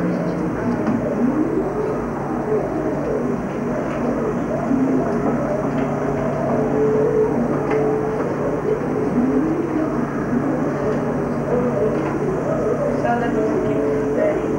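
Classroom chatter: several students talking at once in small groups, over a steady low hum.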